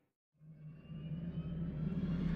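Silence, then a low, steady rumbling drone fades in about half a second in and slowly grows louder, with a faint rising whine above it.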